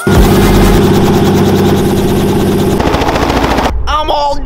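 A helicopter running close by, its rotor making a fast, steady chop; the sound cuts off abruptly shortly before the end.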